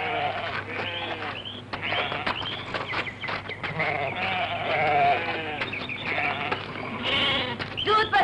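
A flock of sheep bleating, many calls of different pitch overlapping one another, over a low steady hum.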